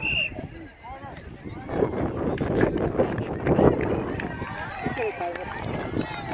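Distant, overlapping voices of players and spectators across a soccer field, with a short high whistle blast right at the start. In the middle a rumble of noise on the microphone is the loudest part.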